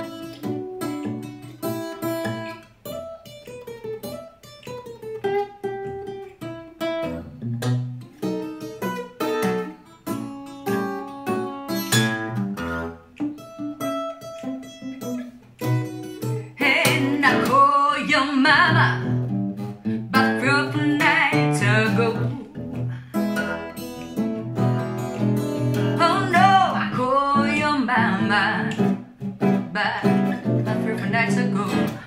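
Acoustic guitar playing a picked solo melody line. About halfway through, a woman's voice comes in singing over the guitar, and the music gets louder.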